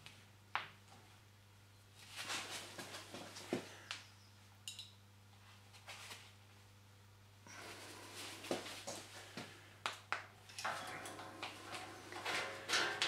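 Hand rivet nut tool squeezed to set a 6 mm steel rivet nut in thin sheet steel: faint creaking and scraping as the nut is pulled up and collapses, with several sharp clicks from the tool and a brief high squeak about five seconds in.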